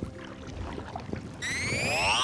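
Faint splashes of a kayak paddle in calm water. About one and a half seconds in, a rising electronic sweep starts, climbing steadily in pitch and growing louder.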